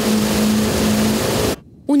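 Outboard motor of a small motorboat running at speed, a steady drone under a loud rushing hiss of water and wind; it stops suddenly about a second and a half in.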